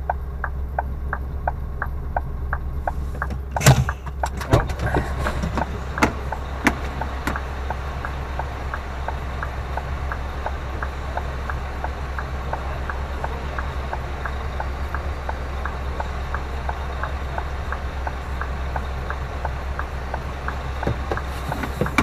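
Scania lorry's diesel engine idling, heard from the cab, with a steady ticking of about three or four ticks a second over it and a few sharp knocks between about four and seven seconds in.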